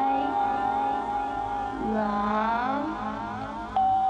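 Ambient electronic music: sustained, wavering synthesizer chords whose tones slide in pitch around the middle. A new, louder chord comes in suddenly just before the end.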